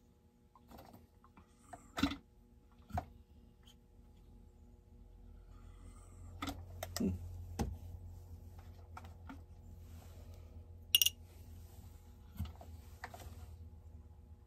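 Scattered light clicks and knocks of plastic and metal chainsaw parts and small tools being handled on a workbench during a teardown, the sharpest click about eleven seconds in. A low steady hum comes in about five seconds in.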